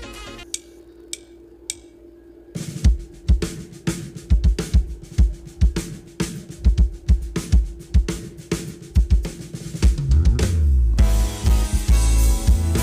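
A drummer clicks his sticks together three times to count in, then plays a drum-kit groove of kick, snare, hi-hat and cymbals. Near the end the rest of the band comes in with guitar, bass and keys.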